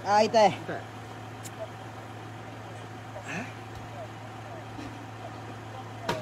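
A person's voice breaks out loudly with a wavering pitch for about half a second at the start, and a softer voice rises briefly about three seconds in, over a steady low hum.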